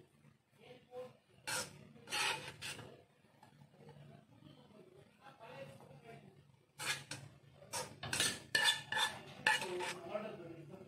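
A spoon scraping and clinking against a plate as fried noodles are tossed and mixed. There are a few strokes between about one and a half and three seconds in, then a busier run of them in the last three seconds.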